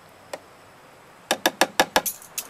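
A metal spoon tapping once, then about six or seven quick times near the end, knocking minced garlic off into a plastic food processor bowl.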